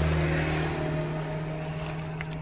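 A steady low mechanical hum, with rustling of paper and plastic food wrapping being handled close by.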